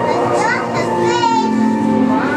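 Children's voices and chatter in a busy public hall, with a high, warbling child's call about a second in, over steady background music.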